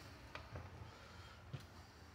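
Near silence, broken by three faint knocks, the loudest about one and a half seconds in: footsteps and bumps of someone stepping up through a travel trailer's entry door.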